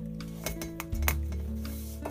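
Background music with held notes and a bass line, over a few light clicks and taps of hands handling a metal embroidery frame as adhesive stabilizer is pressed onto it.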